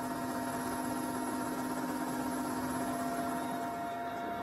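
Steady helicopter cabin noise in flight: a constant mechanical hum with several fixed tones over a noisy bed. The lowest tone drops out shortly before the end.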